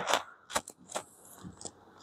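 Felt-tip marker drawing on a whiteboard: a few short taps as the tip meets the board and faint scratchy strokes in the middle.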